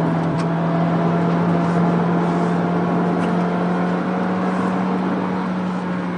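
Cabin noise of a Peugeot 3008 being driven through corners: a steady low engine drone with road and tyre noise over a rough surface.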